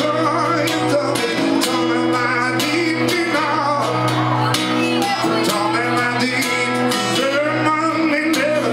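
Live acoustic song: a man singing while strumming an acoustic guitar.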